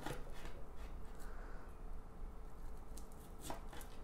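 A kitchen knife slicing through a kimbap roll onto a bamboo cutting board, with a few soft cuts and taps of the blade, two of them near the end.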